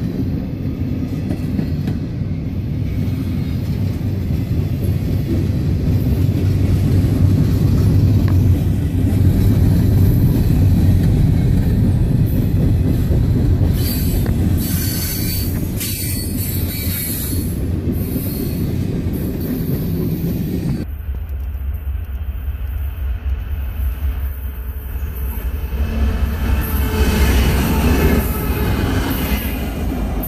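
Norfolk Southern freight cars (covered hoppers and boxcars) rolling past close by, with a steady heavy rumble of wheels on rail. Higher wheel squeal cuts in for a few seconds around the middle and again near the end.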